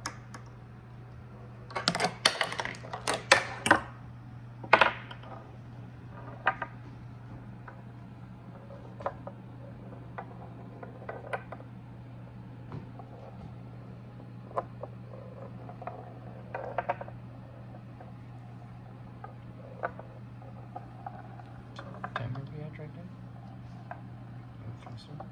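Steel ball rolling and clattering through a wooden marble-run roller coaster: a quick run of sharp clicks and knocks about two to five seconds in, then scattered single clicks as it rolls along the wooden tracks and drops through the gates.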